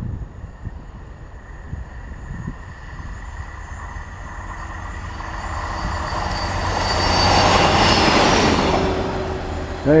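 A self-propelled rail track machine approaching and passing at speed on the main line. Its running noise builds steadily, is loudest about three-quarters of the way through, then fades as it goes by.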